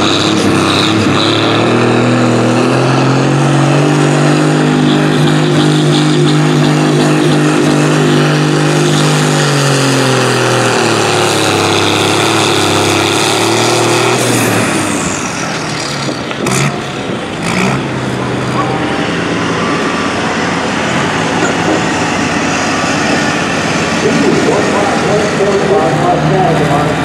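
Case 1030 tractor's six-cylinder diesel engine running hard under load pulling a sled, holding a steady note, then dropping in pitch about ten seconds in and carrying on lower for the rest, with a few sharp clicks in between.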